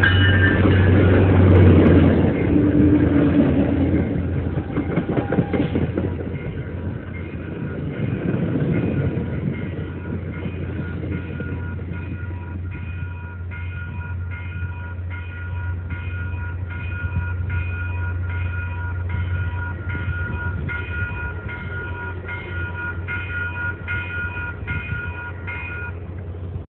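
MBTA diesel commuter train passing through a grade crossing: a horn sounds at the start, then the locomotive and cars rumble by and fade over the first several seconds. A crossing bell dings steadily, about two strokes a second, and is clearest once the train has passed.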